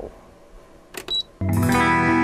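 A short click with a brief high ding about a second in, then background music starts with a guitar chord ringing out.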